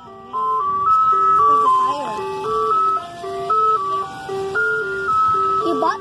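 Ice cream truck's loudspeaker playing its jingle: a simple melody of clean, chime-like electronic notes over a repeating two-note bass line.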